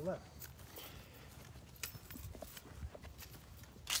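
Footsteps on dry crop stubble and grass as people walk across a field, soft irregular steps over a low rumble.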